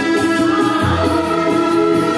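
Hindi film song played from a vinyl LP on a turntable: a chorus holds long sung notes over orchestral accompaniment.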